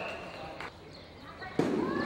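A sharp knock about two-thirds of a second in and a sudden louder thump near the end, among voices in a large indoor arena.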